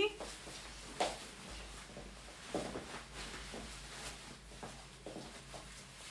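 Faint rustling and brushing of a quilted jacket's fabric as it is pulled on, a few soft swishes in a small quiet room.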